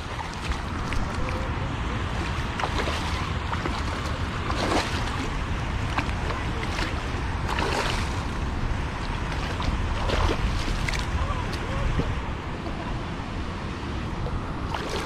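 A hooked striped bass splashing and thrashing at the water's surface as it is reeled in, with sharp splashes about 5, 8 and 10 seconds in, over steady wind rumble on the microphone and moving water.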